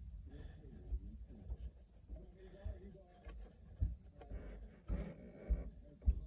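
Quiet scratchy strokes of a small paintbrush dabbing and scrubbing acrylic paint onto a plastic HO scale boxcar truck, with low bumps from handling the model, the strongest about four and five and a half seconds in.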